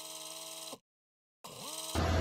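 A brief held electronic chord that cuts off abruptly under a second in, then a moment of dead silence, then a tone that slides up and grows louder near the end: an edit transition between news segments.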